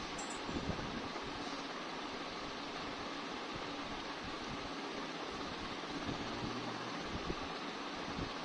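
Steady background hiss with a faint low hum: room and line noise on a video-call recording.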